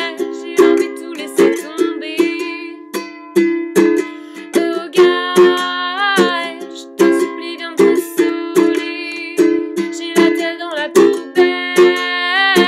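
Ukulele strummed in a steady, even rhythm, with a woman singing phrases over it.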